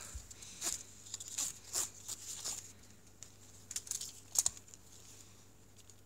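Woven nylon NATO watch strap being pulled out from under a watch case, the fabric rasping against the spring bars and steel keepers in a series of short scrapes, the loudest about four and a half seconds in.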